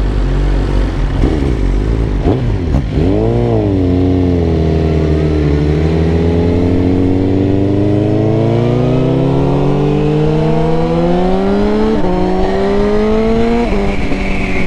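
Suzuki GSX-R1000 inline-four engine pulling away from a stop and accelerating. The revs rise and fall about three seconds in, then climb steadily for several seconds. The pitch drops suddenly at an upshift near the end, climbs again, and drops once more at the close.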